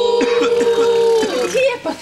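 Several people holding a long, loud 'wooo' together in a mock ghost wail, their voices at different pitches with one wavering; it breaks off about a second and a half in, followed by brief talk.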